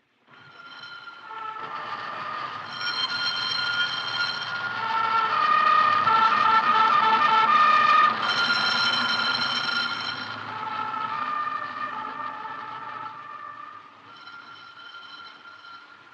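A closing-time siren sounding from an office or factory building: several steady tones blaring together, shifting in pitch now and then. It swells to its loudest about six to eight seconds in, then dies away.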